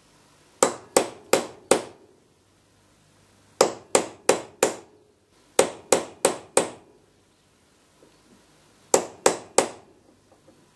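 Hammer blows on a steel drift driving a glued wooden wedge into the kerf of a hickory handle to lock a pickaroon head on. The blows come in four bursts of four, about three a second, each a sharp metallic strike with a short ring. The wedge is very near the bottom of the kerf, nearly seated.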